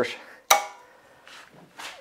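A single sharp metallic clink about half a second in, ringing briefly as it fades: a metal hand tool knocking against the rear brake shoe and hub assembly. Faint handling noise follows.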